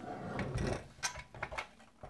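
Handling noise of a metal toy steam fire engine being picked up and turned over on a wooden table: a scraping rub in the first second, then several light clicks and knocks.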